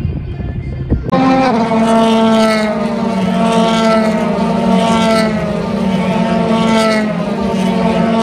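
Race car engine running on the circuit: a steady, high engine note that starts suddenly about a second in, dips slightly in pitch at first, then holds.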